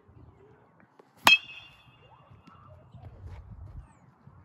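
A metal baseball bat hitting a ball once, a sharp ping with a short ringing tone after it, about a second in.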